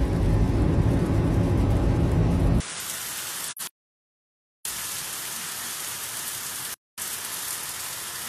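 Road and engine noise of a car driving at speed, then an abrupt switch to the steady hiss of heavy rain pouring onto a street. The rain cuts out completely for about a second near the middle, and briefly again near the end.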